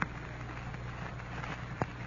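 Background noise of an old radio recording between announcer lines: a steady low hiss and hum, with a single click near the end.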